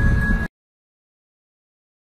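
Low rumbling outdoor noise with a thin steady high tone stops abruptly about half a second in, followed by complete digital silence: the soundtrack drops out at a cut between clips.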